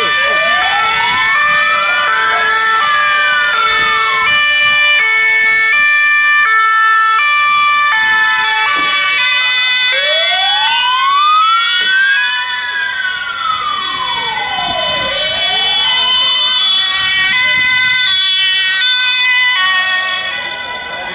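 Several emergency-vehicle sirens sounding at once as ambulances drive off on priority run. A two-tone siren steps between high and low notes, overlaid by a wailing siren that rises and falls in slow sweeps of about five seconds each.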